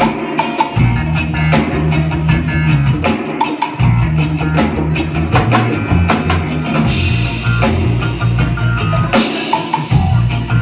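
Live band playing with drum kit and electric guitar over a bass line, the low end cutting out briefly three times in rhythmic breaks.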